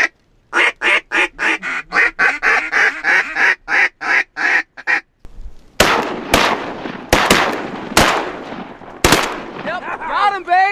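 A rapid quacking series on a duck call for about four seconds as ducks come in, then a volley of about seven shotgun shots from several guns over some three seconds, some shots nearly together, fired at the flock.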